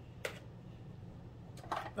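Quiet room with a low steady hum and one sharp, light click about a quarter second in.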